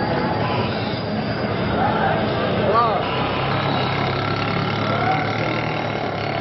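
Busy street ambience: many voices and traffic noise over a steady low hum, with a short rising-and-falling call about three seconds in.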